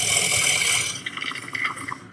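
A dragon's loud rushing hiss of breath on a TV drama's soundtrack, played back through the reaction video. It is strongest for about the first second, then fades with some crackle.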